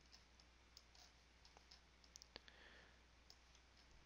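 Near silence with a few faint, short computer mouse clicks.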